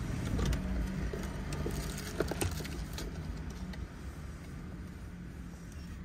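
Car engine idling steadily, heard from inside the cabin, with a few light clicks and rustles about two to three seconds in.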